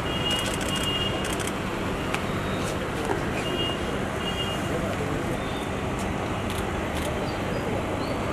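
Steady murmur of a crowd of press photographers and onlookers, with clusters of rapid camera shutter clicks, most of them in the first second or so. A short high beep sounds twice.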